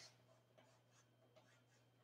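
Very faint chalk strokes on a board as lines are drawn: a run of short, soft scratches.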